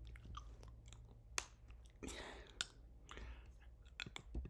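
Faint, scattered sharp clicks and short rustling noises over a low hum.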